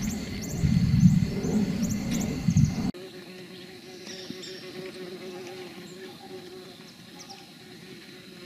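Forest insects chirping in a steady pulse, about two high chirps a second, over a heavy low rumble. About three seconds in the sound cuts suddenly to quieter forest ambience, with a steady low hum and scattered faint chirps.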